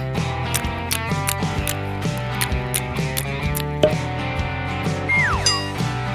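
Cartoon background music with a steady beat, joined about five seconds in by a short falling whistle-like sound effect.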